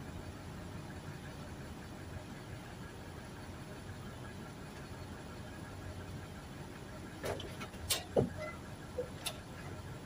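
Steady low rumble of outdoor background noise, with a few brief clicks between about seven and nine seconds in.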